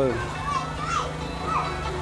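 A few short, faint voiced calls over a steady low hum.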